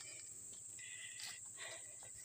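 Faint, steady high-pitched insect chirring, with a few soft rustling steps on grass.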